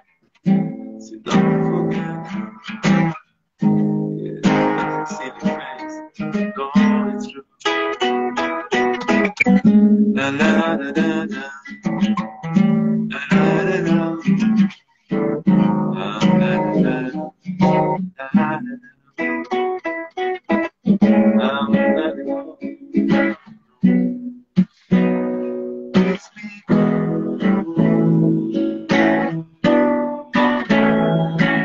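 Nylon-string classical guitar strummed in chords, playing a song, with several short breaks in the sound.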